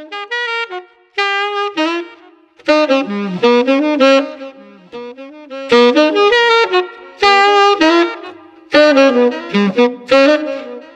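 Jazzy saxophone melody as background music, played in short phrases with brief pauses between them.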